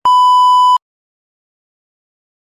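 A TV test-pattern tone used as an editing sound effect: a single steady, loud electronic beep that lasts under a second and cuts off suddenly.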